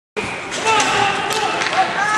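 Ice hockey game sounds: voices shouting and calling over a steady crowd din, with several sharp clacks of sticks and puck on the ice.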